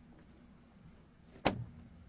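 A single sharp knock about one and a half seconds in, over a steady low hum of the room.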